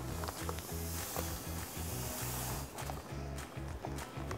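Fine aquarium sand substrate poured from a plastic bag into an empty glass tank: a soft hiss that lasts about two and a half seconds and then stops. It sits over background music with a steady beat.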